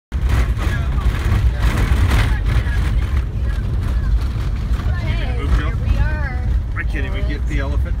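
Vehicle driving over a bumpy dirt road, heard from inside the cabin as a steady low rumble, with rattling jolts over the first few seconds. Voices talk from about five seconds in.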